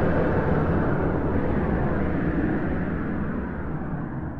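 A low, rumbling wash of noise with no clear notes, part of an instrumental album track, slowly fading.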